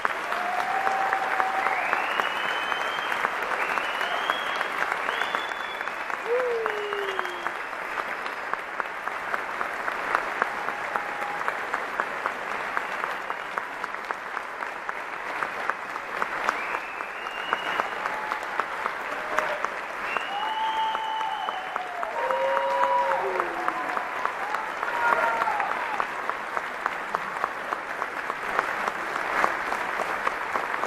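Audience applauding steadily, with shouts and whoops of cheering rising and falling over the clapping throughout.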